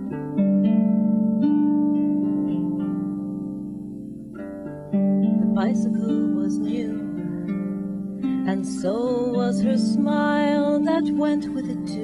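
Harp playing a slow, gentle song introduction, its low plucked notes ringing and overlapping. A woman's singing voice joins in about halfway through.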